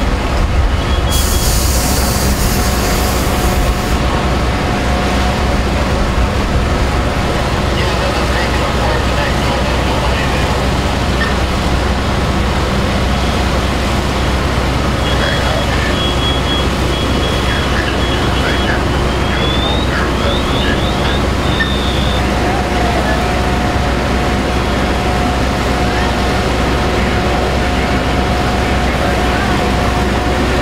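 Fire engine's diesel engine running steadily, with a burst of hiss about a second in and a few short high electronic beeps and rising chirps past the middle.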